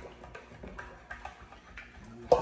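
A spoon stirring batter in a glass mixing bowl, making faint, irregular ticks and clinks against the glass.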